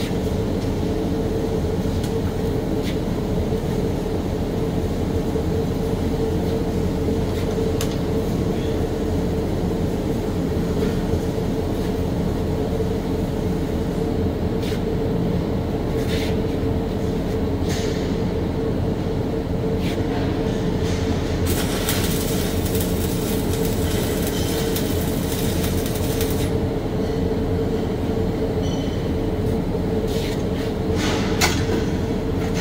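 Steady roar of a welding booth's fume-extraction blower, with a constant hum. Now and then there are short knocks, and about two-thirds of the way through comes a hiss lasting about five seconds.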